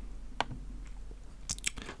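A few faint, sharp clicks over quiet room tone, with a brief noisier sound near the end.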